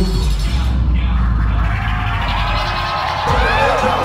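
Live hip-hop concert through the venue's PA: a beat with heavy, steady bass, loud in a crowded room. Crowd shouting and cheering rises over it in the second half.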